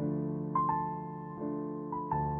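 Slow, soft keyboard music: held chords with single melody notes added one after another, a higher note sounding about half a second in and again near the end.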